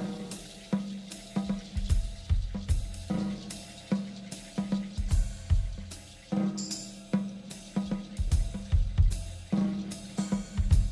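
Jazz intro groove on drum kit and hand percussion: snare, cymbal and bass-drum strokes in a steady repeating pattern over low bass notes.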